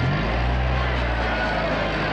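A steady low drone that starts suddenly and fades after about two seconds, with crowd voices coming up near the end.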